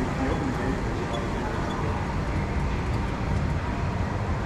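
Steady low rumbling noise of an indoor kart track while a kart with a snapped throttle cable is pushed along the concrete by hand.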